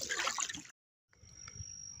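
Water trickling and lapping, cut off abruptly by a moment of dead silence; then faint outdoor background with a thin, steady high tone.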